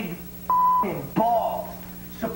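A man talking, with a short, steady, single-pitched beep about half a second in that covers a word: a censor bleep over profanity.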